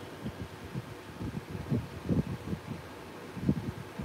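Hands pinching and pressing wet clay while sculpting a horse's head onto a clay vase: soft, irregular dull thuds, several a second, over a steady background hiss.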